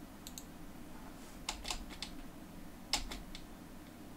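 Computer keyboard and mouse clicks: a few separate clicks, two faint ones near the start, a small cluster midway and the loudest about three seconds in, over a low steady hum.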